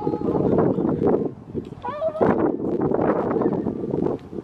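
Wind rumbling on the microphone, with a short, high, wavering voice-like call about two seconds in.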